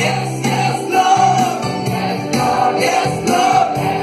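Christian worship song: a group of voices singing together over instruments with a regular beat.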